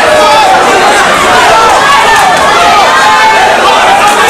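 A loud, dense crowd of ringside spectators shouting and cheering at a boxing bout, many voices overlapping continuously.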